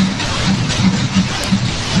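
A massive hailstorm: a loud, dense, unbroken clatter of hailstones with a low rumble underneath.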